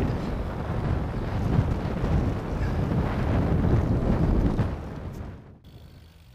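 Wind buffeting the microphone of a camera on a moving bicycle, a loud rumbling noise that fades about five seconds in. It then cuts abruptly to a much quieter background with a low steady hum.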